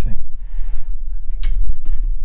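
Handling noise as a guitarist shifts in close to the microphone: a loud, steady low rumble with a few light knocks and clicks.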